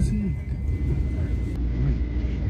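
Passenger train running, a steady low rumble inside the rail car, with a thin steady high whine that cuts off about one and a half seconds in. A brief trace of a voice at the very start.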